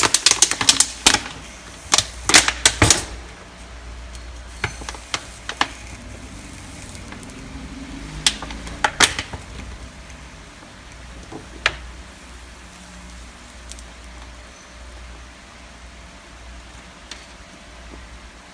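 Thin plastic bottle crackling and clicking as it is gripped and worked against a heated metal tool over a steel sink to melt a hole in its base. A dense run of sharp clicks comes in the first three seconds, then scattered single clicks.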